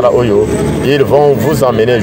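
A man talking continuously, a narrating voice.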